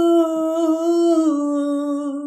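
A single male voice singing a ginan unaccompanied, holding one long devotional note that dips slightly in pitch about halfway through.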